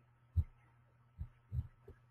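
Four short, soft, low thumps, unevenly spaced, with near silence between them; the first, about half a second in, is the loudest.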